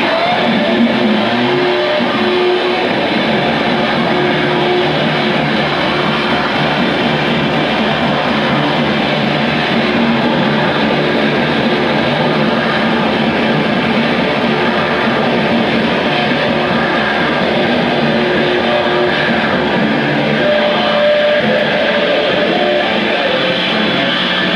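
Electric guitars played through amplifiers in a dense, steady wall of distorted noise, with a few held tones ringing over it. One of those tones comes in near the end.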